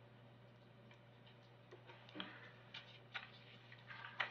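Near silence: room tone with a steady low hum, broken by a few faint scattered clicks and taps, the clearest about two and three seconds in.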